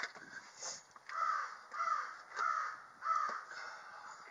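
A crow cawing four times in an even rhythm, about two-thirds of a second apart.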